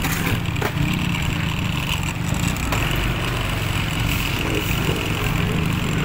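Small vehicle engine running steadily at low speed, a low, even throb.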